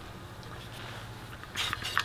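A short hiss of propane about a second and a half in, as the button on the conversion kit's propane regulator is pushed. The hiss shows gas reaching the regulator from the opened tank.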